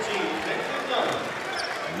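Basketball arena ambience: a steady crowd murmur, with a few faint knocks of the ball bouncing on the hardwood court.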